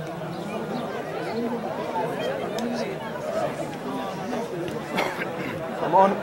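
Chatter of several voices talking and calling out at once, with a short sharp knock about five seconds in and a loud shout at the very end.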